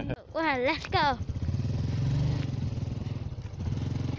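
Small motorcycle engine running steadily with a low, even putter, coming in about a second in.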